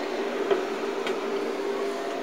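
A steady mechanical hum, with a couple of faint clicks about half a second and a second in as the clear pen door is pushed shut.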